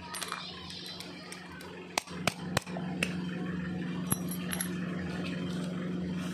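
A few sharp metallic clicks and knocks as a padlock and its keys are handled and set down on a hard surface, about two to four seconds in. A steady low hum runs underneath and gets louder partway through.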